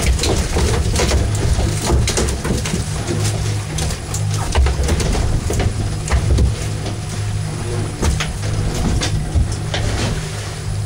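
A boat engine running steadily with a low drone, with scattered light clicks and knocks over it.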